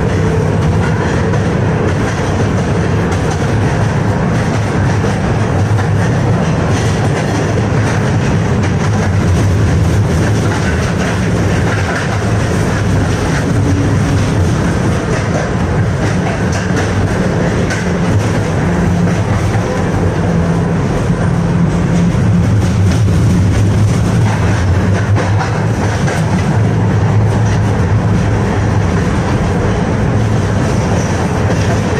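Inside a 1985 KTM-5M3 (71-605) tram in motion: steady rolling noise of steel wheels on the rails with a continuous low hum from the running gear, heard from within the passenger cabin.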